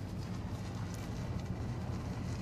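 Pickup truck driving slowly, a steady low engine and road hum heard from inside the cab.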